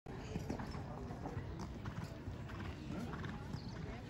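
Hoofbeats of a Holsteiner mare cantering on sand arena footing.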